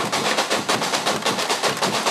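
Carnival comparsa drum section (batucada) playing a fast, steady rhythm of sharp drum strokes.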